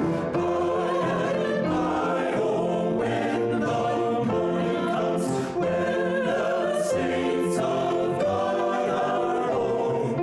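Small mixed choir of men and women singing a hymn in harmony on long held notes, with piano accompaniment.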